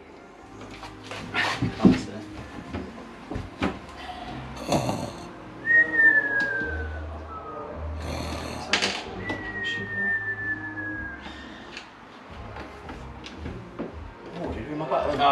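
Cartoon-style snoring, heard twice: each time a noisy snore is followed by a thin whistle that falls in pitch.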